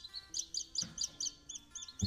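Baby chicks peeping: a quick run of short, high chirps, about five a second.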